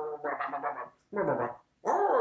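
A man's voice making wordless, animal-like creature noises for a plush puppet, in three short wavering bursts broken by two brief pauses.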